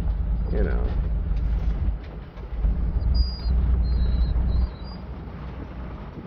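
Vehicle driving on a rough desert dirt track, heard from inside the cab: a low road-and-engine rumble that dips about two seconds in and falls away near the end, with a few faint high squeaks in the middle.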